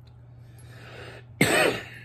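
A man's breath in, then a single short, sharp cough about a second and a half in.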